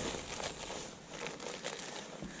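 Faint, irregular rustling and crinkling with scattered light clicks, like close handling noise.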